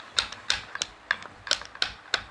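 Sharp, light taps on an Isuzu 4JA1 diesel piston, about five a second and unevenly spaced, as it is worked loose from its connecting rod.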